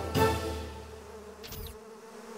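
A swarm of bees buzzing in a steady drone, as a cartoon sound effect. The buzzing comes in under music that fades out over the first second and a half, with a brief high falling swish about halfway through.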